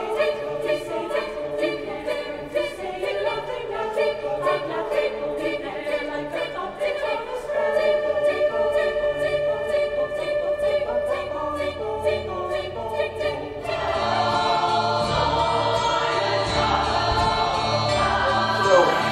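Women's choir singing over a steady ticking beat. About fourteen seconds in, the sound changes to a duller, more muffled recording.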